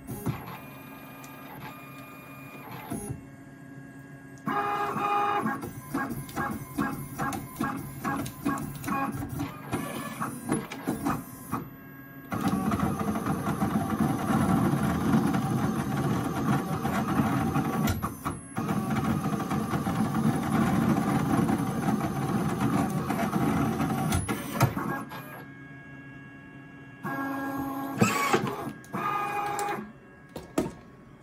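iColor 250 sticker printer-cutter running a print-and-cut job. A motor whine is followed by rhythmic pulses about twice a second. A long loud stretch of steady mechanical running lasts from about 12 to 24 seconds, and a last whine comes near the end.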